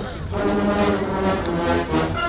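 Brass band music: held notes changing pitch in a melody, over the chatter of a crowd.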